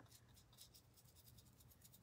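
Near silence, with faint, quick scratches of a fine paintbrush working paint over the raised glued-on details of a small wooden piece.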